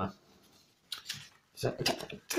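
Fingers rubbing and separating the glossy paper pages of a printed advertising flyer, which are stuck together: a few faint ticks, then short paper rustles in the second half.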